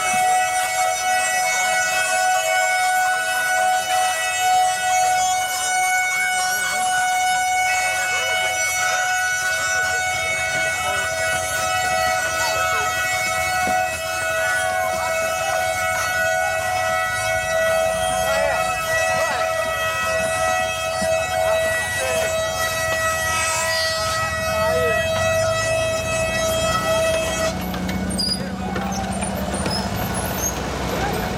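Wooden ox cart's axle squealing in a steady, high, sustained wail: the traditional 'singing' of a carro de boi, its wooden axle turning against wooden bearings. The wail cuts off near the end, with voices in the background.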